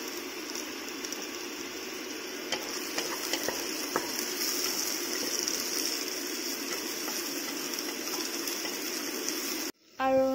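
Onions and garlic sizzling steadily in oil in an aluminium pressure cooker, with a few light scrapes and taps of a wooden spatula as they are stirred. The sound cuts off abruptly just before the end.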